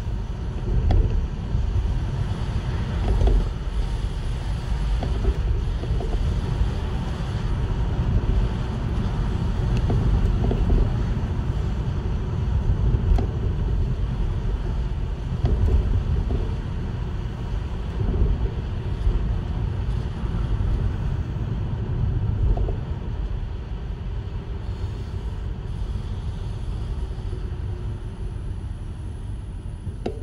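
Low rumble of a vehicle on the move at road speed, with wind on the microphone, swelling and easing every few seconds.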